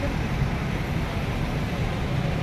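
Steady road traffic noise, a low rumble.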